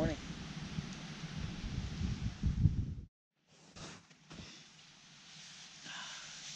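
Strong wind gusting on the microphone: a low, uneven rumble that rises and falls for about three seconds and stops abruptly. After a moment of silence comes a much quieter steady outdoor hiss with two soft knocks.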